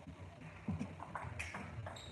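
Table tennis rally: a celluloid-type ball clicking off bats and the table several times in quick, uneven succession.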